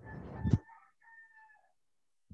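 A faint animal call in two parts, held at a steady pitch for about a second and a half, just after a short hiss and a click.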